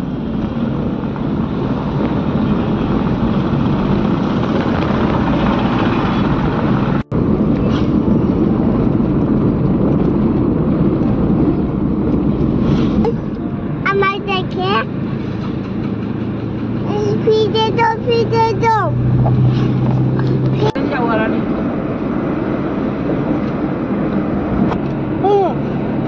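Steady road and engine noise inside a moving car's cabin, with a child's high voice breaking in a few times, around a third and two thirds of the way through.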